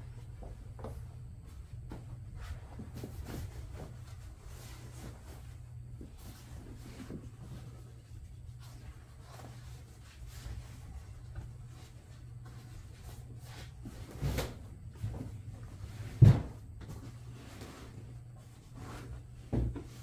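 Vinyl upholstery cover being handled and shifted over a foam pad on a wooden bench: soft rustling and small scuffs, with two knocks about 14 and 16 seconds in, the second the loudest. A steady low hum runs underneath.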